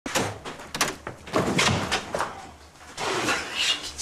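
A door banging and rattling, with a string of sharp knocks and thumps spread over a few seconds.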